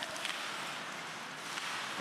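Ice hockey rink ambience during live play: a steady hiss of skates on the ice and a sparse arena crowd, with a faint click or two near the start.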